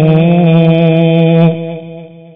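A man's voice chanting a long, steady held note in a melodic recitation style, then fading away about one and a half seconds in.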